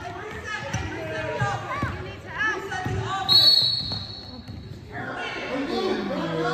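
A basketball dribbled on a hardwood gym floor, a run of bounces echoing in the hall. About three seconds in, a referee's whistle blows one steady blast for about a second and a half.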